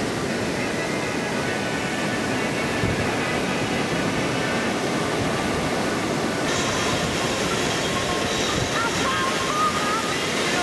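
Steady rush of breaking ocean waves and whitewater, with a faint wavering tone over it in the last few seconds.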